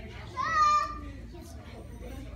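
A child's high-pitched shout, about half a second long, rising at first and then held, over low background chatter in the room.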